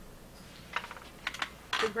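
Two quick clusters of light clicks, about half a second apart, in a pause. Then a woman starts speaking again near the end.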